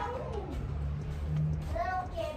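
A cat meowing: one falling call near the start and another starting near the end, over a low steady hum.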